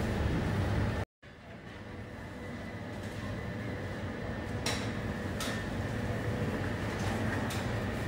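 Steady background hum of a sandwich shop, with a faint high whine running through it and a few light clicks from handling at the counter. The sound drops out for a moment about a second in, then fades back up.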